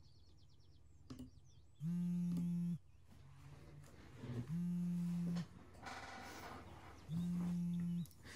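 A low buzzing alarm sounds three times, each about a second long, in an even repeat.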